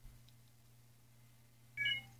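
A low steady hum, with a short electronic beep of a few steady tones together near the end.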